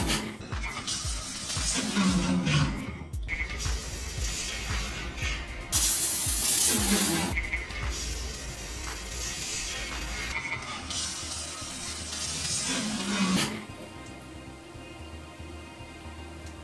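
Background music over bursts of hissing water spray from a toilet-seat bidet nozzle turned up in pressure, the loudest burst about six seconds in.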